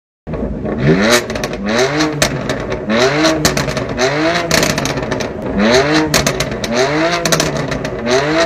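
BMW M4 (F82)'s twin-turbo straight-six being revved while the car stands still: about eight quick throttle blips, each rising and falling in pitch about a second apart, with the exhaust crackling and popping between them.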